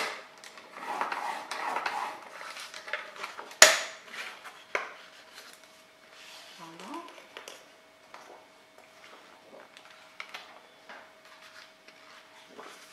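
Paper trimmer worked on black cardstock: the blade carriage run along its rail, scraping through the card for a couple of seconds, then a sharp click, the loudest sound, and another about a second later. After that, quieter rustles and taps as the cut card is handled.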